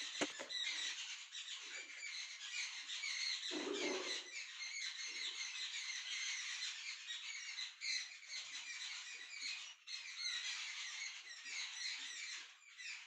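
Continuous dense chatter of many small birds chirping, with a few soft low rustles of handling, the clearest a little over three seconds in.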